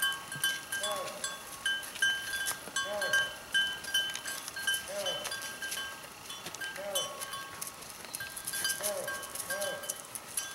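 Neck bells on a herd of cattle and goats clinking irregularly as the animals walk, with short rising-and-falling calls every second or two.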